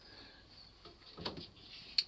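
Faint handling noise as a welder's torch and its rubber-covered cable are picked up and moved, with a small rustle partway through and a sharp knock at the end.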